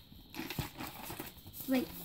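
Paper cards and sticky notes rustling and crinkling with small clicks as they are handled on a wooden table; a child says "wait" near the end.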